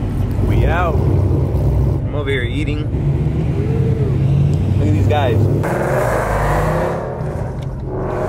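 A car engine's steady low rumble as the car rolls at low speed, with short bits of people's voices over it.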